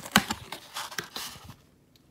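Corrugated cardboard coin box being pulled open by hand: a quick run of sharp taps, scrapes and rustles of cardboard that stops about one and a half seconds in.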